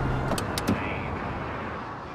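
The end of background music dies away. A steady hiss follows, with a few sharp clicks about half a second in from a car door's handle and latch.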